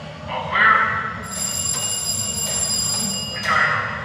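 Bumper-car ride's start bell ringing steadily for about two seconds, the signal that the cars are about to be powered up; voices call out around it.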